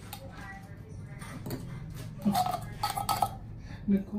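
A metal fork scraping and clinking against the inside of an open tin can as canned tuna is worked out into a plastic bowl of pasta. The clinks come loudest and closest together in the second half.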